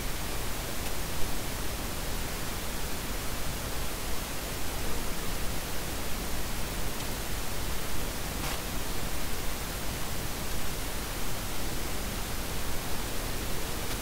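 Steady hiss of background recording noise, with a faint click about eight and a half seconds in.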